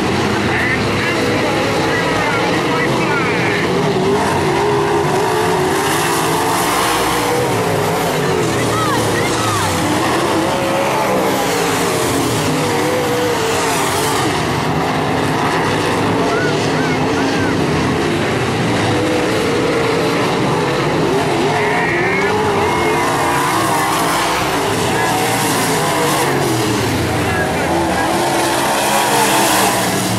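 A field of IMCA Modified dirt-track race cars' V8 engines running hard around the oval. Their pitch rises and falls as cars pass, with no break.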